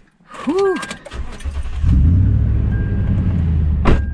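Truck engine started with the key about a second in, building within a second to a steady low idle.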